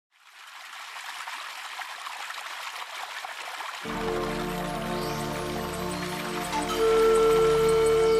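Small stream of water splashing over rocks, fading in from silence. About four seconds in, slow instrumental music with long held notes comes in over it and gets louder near the end.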